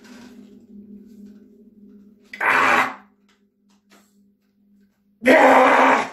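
A man's strained vocal effort while forcing a heavy Powertwister spring bar shut: a long, low held groan, then two loud, forceful grunts of about half a second each, one near the middle and one near the end.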